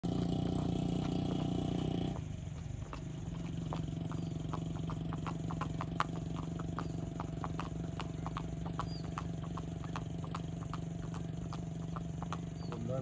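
Chalbaz horse's hooves striking a paved road in an even, quick rhythm of about three beats a second, over a steady low hum. A louder drone fills the first two seconds and cuts off suddenly.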